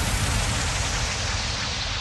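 A dense wash of hiss over a deep low rumble, a noise sound effect in an electronic mix, slowly dying away as its higher part fades.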